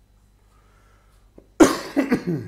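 A man coughs hard: a single sudden loud cough near the end, after a quiet stretch.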